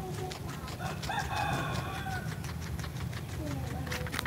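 Close-miked guinea pig chewing slices of carrot and cucumber: rapid, crisp crunching clicks throughout. About a second in, a rooster crows in the background for about a second.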